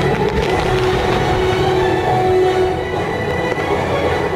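A dense fireworks barrage: a continuous rumble of bursts and crackle. Music plays long held notes over it.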